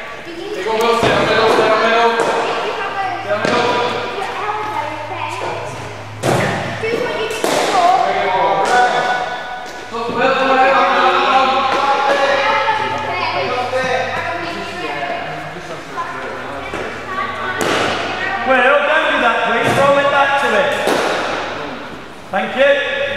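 Children's voices talking in a large echoing hall, with a few sharp thuds.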